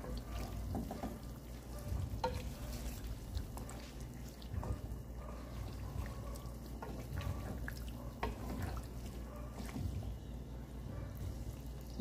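Cubes of pork belly adobo frying faintly in their own rendered fat in a non-stick pan, with a wooden spatula now and then stirring and scraping against the pan in small clicks; the pork is being fried on to render out its oil.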